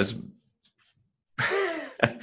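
A man's breathy laugh, falling in pitch, about one and a half seconds in, after a short spoken word and a moment of quiet.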